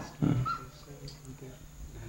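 A man's voice makes a brief low sound just after the start, then a quiet pause with faint room noise.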